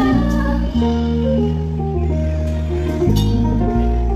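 Live band music through a PA system: an instrumental passage of held notes stepping in pitch over a steady bass line, with little singing.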